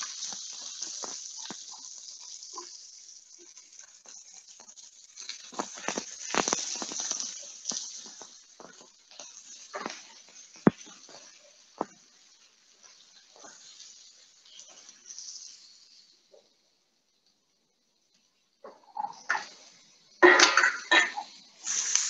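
Diced red onions sizzling in hot ghee in a frying pan. Spatula and steel bowl knock and scrape against the pan as the onions are tipped in and stirred. The sizzle dies down in the last few seconds, and a voice comes in near the end.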